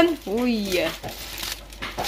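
Plastic carrier bag and aluminium foil crinkling and rustling as hands open a foil-wrapped package, mostly in the second half; a voice speaks briefly at the start.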